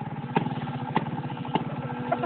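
Snowmobile's two-stroke engine just started after priming, running at a low, uneven idle with a sharp pop about every half second.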